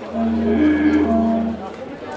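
Didgeridoo playing a steady low drone, with a clarinet line moving between two notes above it. The phrase starts just after the beginning and breaks off about a second and a half in.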